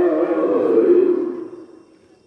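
A man chanting in a drawn-out melodic voice, the last held note dying away about one and a half seconds in.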